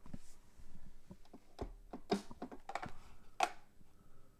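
Computer keyboard keys and mouse buttons clicking irregularly at a desk, with two louder clacks about two and three and a half seconds in.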